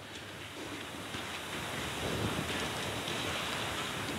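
Thin Bible pages rustling as they are leafed through to a passage, a steady papery hiss that grows a little louder over the first couple of seconds.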